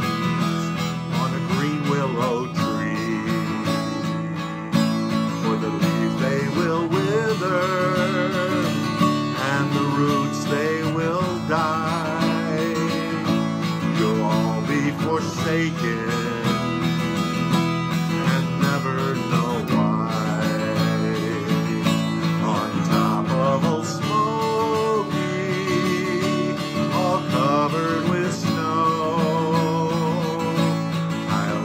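Acoustic guitar strummed steadily while a man sings along with it.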